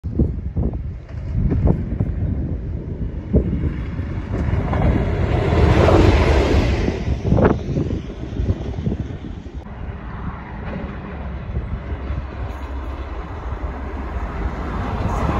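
Rumble of a Class 37 diesel locomotive approaching from a distance, mixed with wind buffeting the microphone; the noise swells for a couple of seconds midway, with a few knocks early on.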